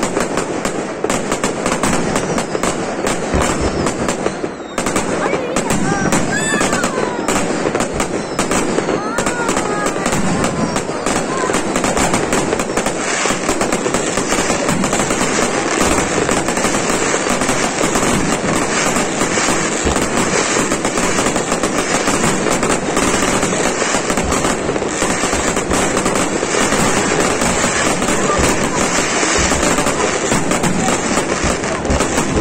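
Aerial fireworks exploding in a dense, continuous barrage: bang after bang of bursting shells with crackle, close together and loud. There is a short lull just before five seconds in.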